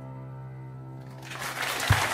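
A grand piano's final held chord rings and fades, then an audience starts applauding a little over a second in, growing louder, with a low thump just before the end.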